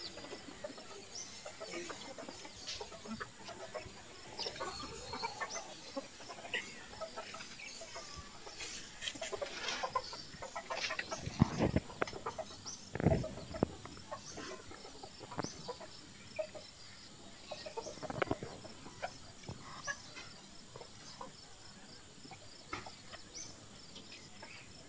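Chickens clucking in the background, over scattered knocks and scrapes of bricks and wet mud mortar being handled and smoothed by hand, with two louder thumps about halfway through.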